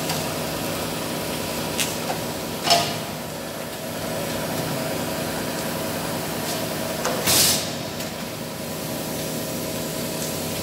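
Book-edge gilding machine running with a steady hum, broken by a few light clicks and two short bursts of noise, about three seconds in and about seven seconds in.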